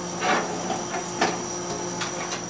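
Water running steadily from a sink faucet into a sink, with two brief splashes, one about a quarter second in and one just after a second.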